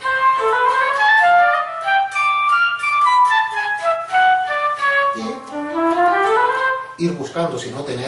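Electric guitar played through a guitar synthesizer, with a sustained synthesized lead tone, running fast single-note scale lines: stepwise descending phrases, then a long rising run in the second half. The notes move through neighbouring positions on the neck without jumps.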